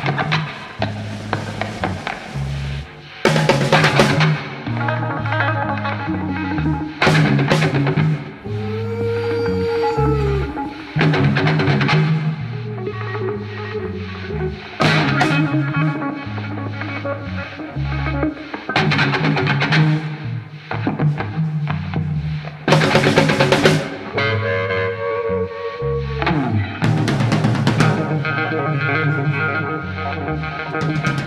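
Live blues-rock trio jamming an instrumental passage: distorted electric guitar over electric bass and a drum kit, with drum fills and repeated cymbal crashes. Twice the guitar holds a long sustained note that bends up and falls back in pitch.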